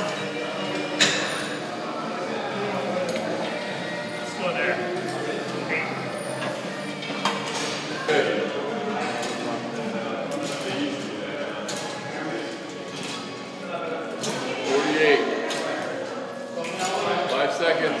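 Indistinct voices in a large gym hall, with scattered sharp metal clinks and knocks from weights as swimmers pull weighted cables through a butterfly recovery drill.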